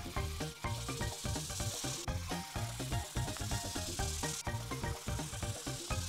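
Background music with a steady beat, under the scratchy hiss of a felt-tip marker rubbing back and forth across paper in long stretches that pause briefly twice.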